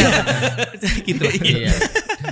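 Men chuckling and laughing together, mixed with a few overlapping spoken words.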